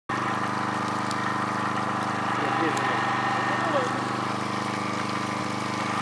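An engine running steadily at a constant speed, its pitch unchanging throughout.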